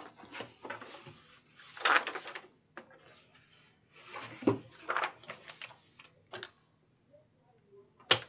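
Paper and cardboard being handled on a cutting mat: sheets of patterned paper rustling and a cardboard box piece being lifted and set down, in a few short bursts with a light knock about halfway through.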